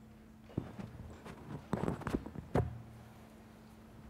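Handling noise of a clip-on microphone being fitted to a shirt: a string of knocks, bumps and cloth rubs in the first half or so, the loudest knock a little past halfway, over a faint steady electrical hum.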